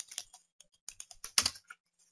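Computer keyboard keys being typed: a dozen or so quick, irregular keystroke clicks, busiest about one and a half seconds in.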